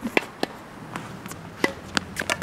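Tennis racket striking balls and balls bouncing on a hard court: a string of sharp pops, about six in two seconds.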